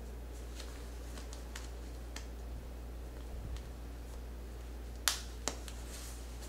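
Plastic snaps on a cloth diaper cover being pressed shut: a few faint clicks, then two sharp clicks about half a second apart near the end, over a steady low hum.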